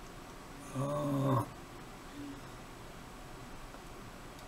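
A man's brief low hummed 'mm', about a second in, with otherwise quiet room tone.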